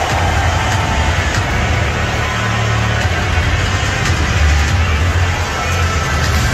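Noise of a large stadium crowd: a dense, unbroken roar of thousands of fans over a heavy, steady low rumble.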